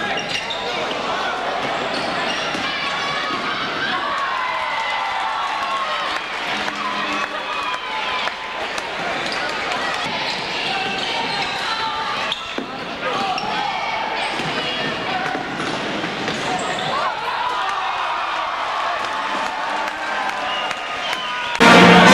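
Live sound of a basketball game in a gym: a ball bouncing on the hardwood floor amid the voices of players and spectators. A sudden loud burst comes in just before the end.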